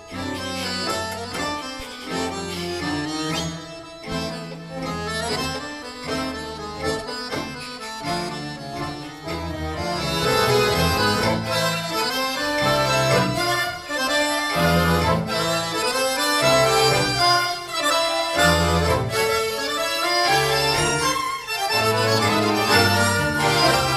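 A large accordion ensemble with violins, cello and wind instruments playing, with a solo chromatic button accordion out in front. The music grows louder and fuller about ten seconds in.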